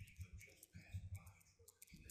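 Faint keystrokes on a computer keyboard: several short, soft clicks spread through the two seconds, as text is typed and Enter is pressed.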